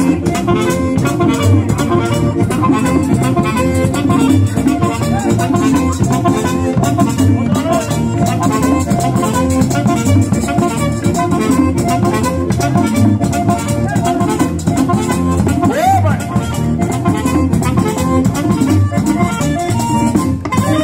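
A live Latin band playing with a steady, driving beat: a button accordion leads over a tambora drum, with a saxophone.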